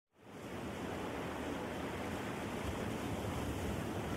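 A steady rushing noise, like wind or moving water, fading in quickly at the start and then holding even.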